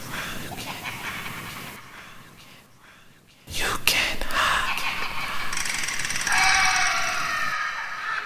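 A whispered voice with dramatic sound effects. The first swell fades almost to quiet, then about three and a half seconds in a sudden louder swell comes in, with held tones toward the end.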